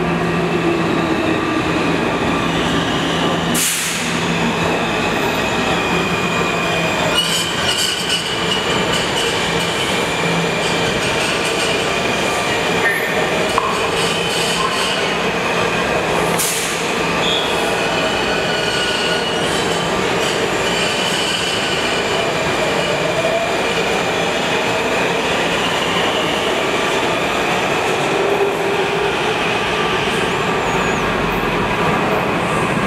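Washington Metro subway trains in an underground station: a steady rumble with wheel squeal and motor whine that glides up and down in pitch, as a Breda 2000 series train pulls in and stops. Two sharp clacks stand out, about four seconds in and again about sixteen seconds in.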